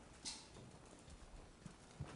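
Near silence in a large room, with a brief rustle and a few faint soft knocks.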